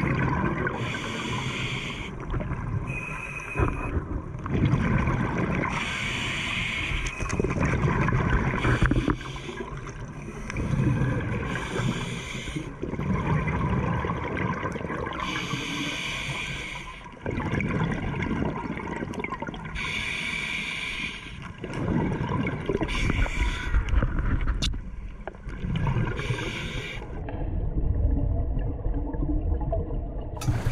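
A scuba diver breathing through a regulator underwater: a hissing breath in alternates with a bubbling, gurgling breath out, over several breaths.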